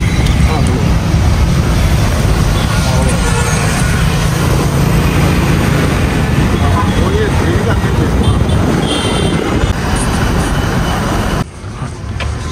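Steady road and traffic noise heard from inside a moving car driving through city streets, with a low rumble; it cuts off suddenly near the end.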